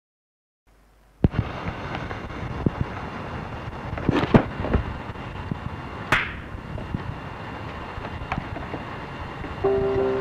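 Crackling, hissing noise full of scattered clicks and pops. It starts suddenly about a second in and has a few louder bursts around the middle. Near the end a simple melody of steady electronic keyboard notes begins over it.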